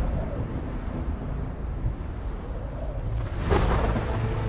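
Deep, steady low rumble of war-film trailer sound design, with a whoosh swelling about three and a half seconds in.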